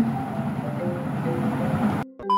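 A rumbling, noisy static-like video-glitch sound effect over background music with short scattered notes, leading into a TV colour-bar transition.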